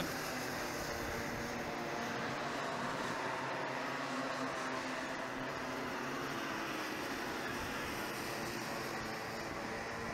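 A field of small two-stroke racing kart engines running on track, heard as a steady blended drone of many engines at once with faint wavering pitches.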